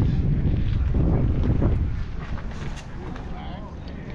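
Wind buffeting the microphone, a low rumble that eases off in the second half.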